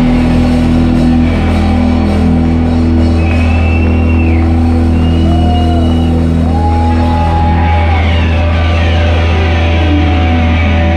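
Rock band playing loudly live: a sustained bass and guitar drone with few drum hits, and a few long held higher notes sliding in over it in the middle.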